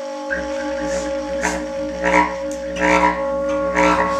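Improvised ensemble music: tenor saxophone, bass clarinet and bowed cello hold long steady tones together. A low drone enters a moment in, and sharper accents repeat about every three-quarters of a second.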